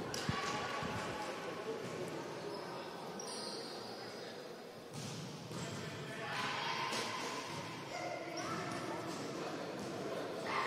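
Echoing indoor sports-hall ambience: voices and shouts from players and spectators, with a few thuds of the futsal ball on the court floor.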